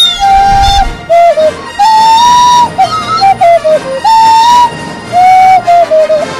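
A person whistling a tune loudly: a single melody line of held notes with short slides from one note to the next.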